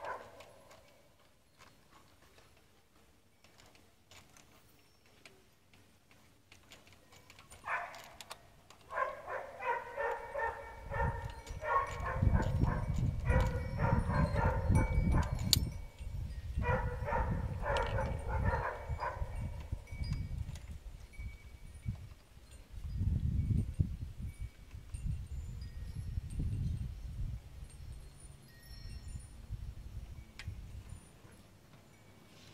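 A ratchet clicking in quick runs with a metallic ring as it backs out the float bowl screws on a Holley carburetor, starting about eight seconds in and stopping a little before twenty. A louder low rumble runs under the clicking and goes on after it.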